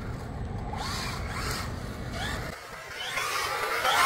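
Traxxas Ford Raptor-R RC truck's brushless electric motor whining in short rising glides over a low rumble. Near the end a hiss of its tyres on wet asphalt builds as the truck slides past close by.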